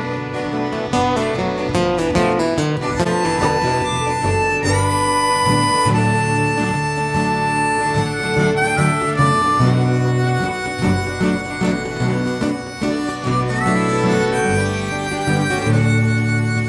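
A live country band plays an instrumental passage. A harmonica carries the melody in long held notes, a few of them sliding up in pitch, over strummed guitar.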